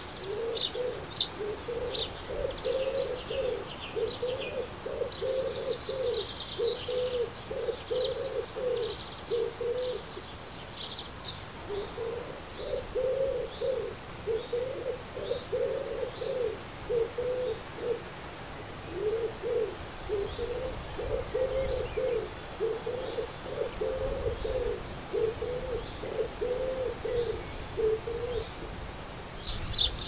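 A pigeon cooing in three long runs of repeated low phrases, with a short break between runs. Small songbirds chirp high above it, most busily in the first ten seconds.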